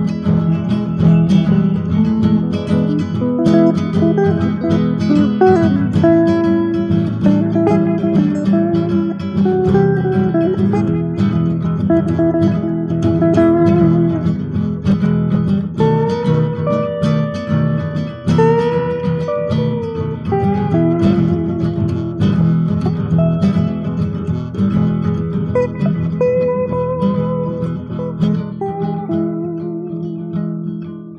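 Instrumental break of a song, led by plucked and strummed guitar playing a melody over a steady low accompaniment, with no singing; it eases off slightly near the end.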